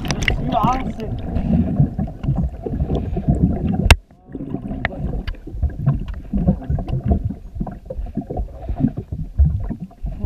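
Muffled rumbling and splashing of water against a waterproof camera housing, with many small knocks. A sharp knock comes about four seconds in, followed by a brief moment of near silence.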